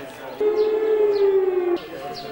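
A loud, sustained tone with overtones, sliding slightly down in pitch for just over a second before cutting off suddenly.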